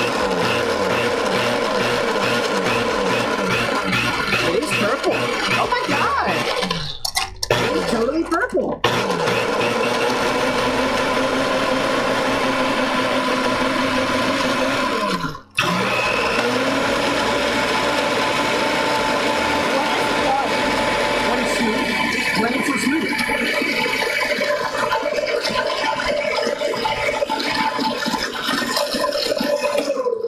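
Red countertop blender running and churning a thick purple potato, coconut milk and pineapple juice mix, with a steady motor whine. It cuts out briefly twice around seven to nine seconds in, stops about halfway through, then spins back up with a rising whine and runs on steadily.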